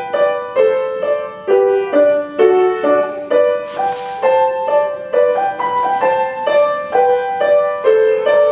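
Grand piano played by a child: a simple, evenly paced melody of single struck notes, about two a second, in the middle register.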